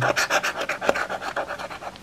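A pointed metal scraper rasping the scratch-off coating off a paper lottery ticket in quick back-and-forth strokes, several a second. The strokes thin out near the end.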